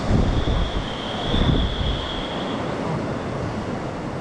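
Rushing river rapids with wind buffeting the microphone, the buffeting heaviest in the first second or so. A faint steady high tone sits over it for about two seconds near the start.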